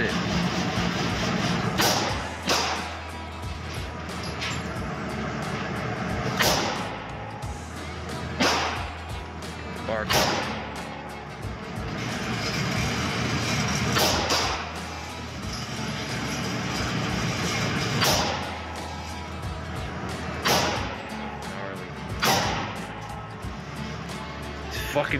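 Single shots from a revolver firing .357 Magnum rounds, one at a time and two to four seconds apart, each with a short echo in an indoor range. A steady low hum runs underneath.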